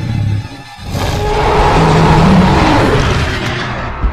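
Film soundtrack of a Spinosaurus: a long, loud creature roar starts about a second in and fades out over about two and a half seconds, over dramatic music.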